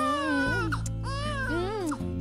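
An infant crying in two drawn-out wails, each rising and falling in pitch; most likely a baby-cry sound effect in a radio drama. A steady music bed plays underneath.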